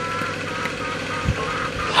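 Steady outdoor background noise, with a few faint short high tones and a soft low thump a little past the middle.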